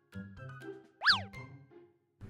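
Soft cartoon background music with light plucked notes. About a second in comes a quick cartoon sound effect whose pitch shoots up and slides straight back down, the loudest thing in the moment.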